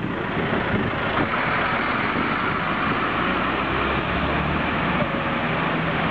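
Busy city street traffic: a steady wash of engines and tyre noise, with a heavy lorry's engine hum coming in close by in the second half.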